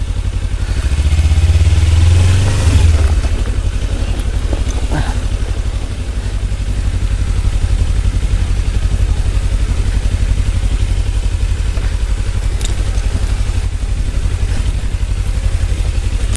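Kawasaki Ninja 300 parallel-twin engine running at low speed as the bike rides over a loose, stony dirt track, swelling louder for a couple of seconds about a second in before settling back to a steady drone.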